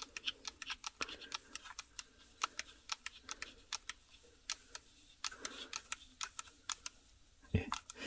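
Light, irregular clicks and ticks of a sanding drum being fitted and the metal mini keyless chuck on a cordless rotary tool being turned and tightened by hand; the motor is off.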